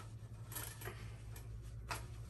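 Faint handling noise of a plastic toy dart magazine being pushed into the back pocket of stretch denim jeans: light rustles and small clicks, the sharpest near the end, over a steady low hum.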